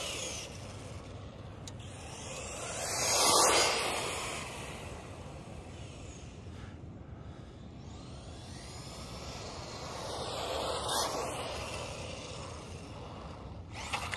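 Traxxas Mini E-Revo VXL, a 1/16-scale brushless RC monster truck, driving on pavement and passing by twice: its motor and tyre noise swells and fades about three seconds in, and again more faintly about eleven seconds in.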